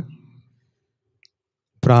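Near silence in a pause between spoken phrases, broken by one faint, short click a little past a second in.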